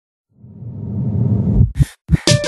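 Song intro: a whooshing swell that grows steadily louder for over a second, then two short deep thumps just before the beat comes in.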